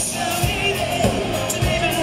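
Live rock band: a man singing lead over electric guitar, bass guitar and a steady drum beat.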